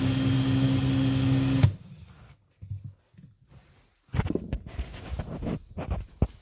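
Cordless drill running at a steady speed, spinning a water pump shaft inside a cloth held around it, then cutting off suddenly after about two seconds. Near the end come scattered knocks and rustles of handling.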